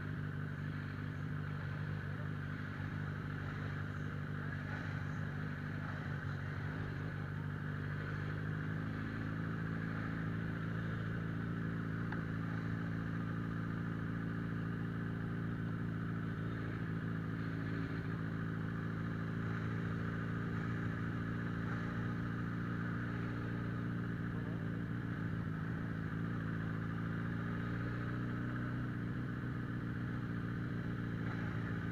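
Suzuki Bandit 650N's inline-four engine running at steady riding revs, heard from a camera mounted on the bike. The engine note shifts slightly and gets a little louder about nine seconds in.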